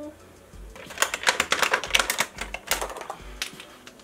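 Plastic eyeliner pens clicking and clattering against one another and against a clear acrylic drawer organizer as they are gathered up by hand. The clicks come in a quick, irregular run starting about a second in.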